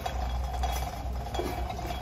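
Steady indoor room tone: a low hum with a faint, constant tone above it and no distinct events.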